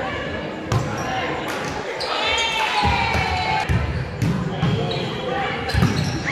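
Volleyball rally in a large gym: several sharp slaps of hands hitting the ball, the loudest near the end, echoing in the hall, with players' voices calling out in between.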